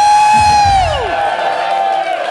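Live hip-hop music in a break where the beat drops out: a long, high held note, with a second one overlapping, bends down about a second in. Crowd cheering and whoops run underneath.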